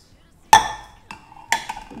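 Kitchenware clinking as a glass cup and a metal spoon are handled over a mixing bowl: a sharp clink with a short ring about half a second in, then a lighter knock and another sharp clink about a second and a half in.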